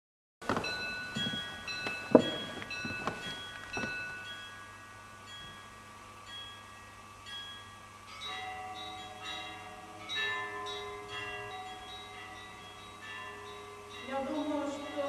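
Bells ringing: a quick series of struck, ringing tones over the first few seconds, the loudest strike about two seconds in. Then a quieter bed of overlapping sustained tones that fills out from about eight seconds in.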